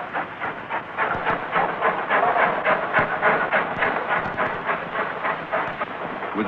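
Steam locomotive exhaust beats over a steady hiss of steam, a fast even run of chuffs about five a second, as a heavy express starts up a gradient with a banker engine pushing from behind.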